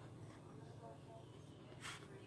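Faint drawing pen scratching on paper, with one short, sharper stroke near the end.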